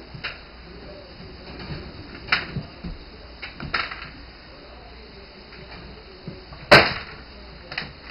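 Scattered light knocks and clicks as puppies move about a pen and are handled, with one sharp, louder knock near the seven-second mark.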